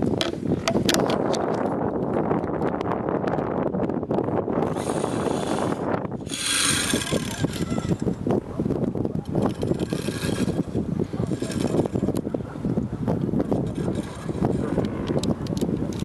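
A rope jump under way: a steady rushing noise, with many small clicks and rattles from the rope and rigging and some stretches of hissing.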